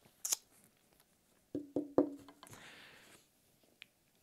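A quiet pause holding a few soft clicks and three quick, sharp knocks with a brief low ring, followed by a short faint hiss.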